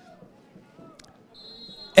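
Referee's whistle blowing the kick-off: one short, steady, high blast heard faintly, starting about a second and a half in. A faint click comes shortly before it.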